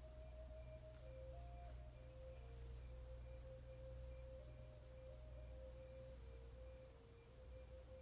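Faint, soft background music: a slow melody of pure, sustained notes that step gently from pitch to pitch, over a low steady hum.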